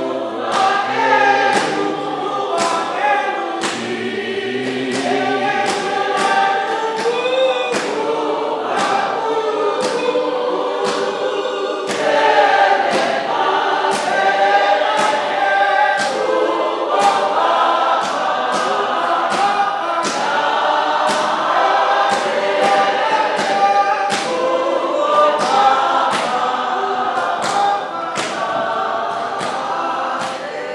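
A church congregation singing together in many voices, loud and steady, with sharp, evenly spaced beats keeping time.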